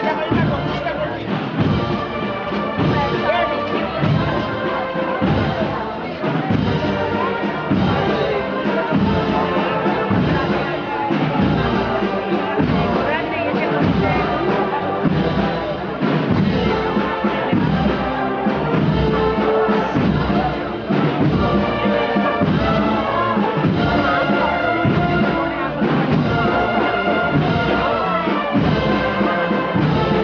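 Brass band playing a slow processional march, with held brass notes over a steady drum beat.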